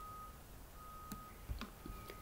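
A faint high electronic beep repeating about once a second, each beep about half a second long, with a few faint clicks in between.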